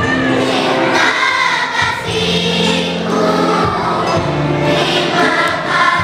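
A fifth-grade children's choir singing a song, in held notes that change every half second or so.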